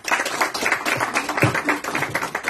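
Audience applauding with a dense, steady patter of clapping.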